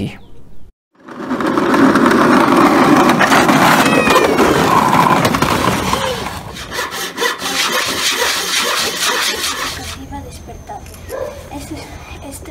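Outdoor home-video sound of children playing: a loud rough, rumbling noise for the first few seconds that fades out, then scattered children's voices.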